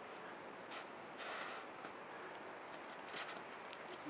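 A few faint footsteps crunching on old, granular snow, over a steady low hiss.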